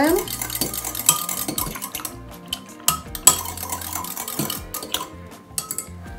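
A long spoon stirring a cherry-syrup drink in a ceramic jug. It clinks against the jug's sides a few times, sharpest about a second in and around three seconds in.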